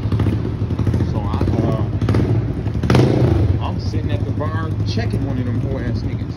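City street noise: a steady low engine hum with people's voices over it, and a louder burst about three seconds in.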